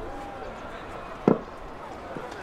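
A single short, sharp knock about a second and a quarter in, over steady open-air background noise with faint distant voices.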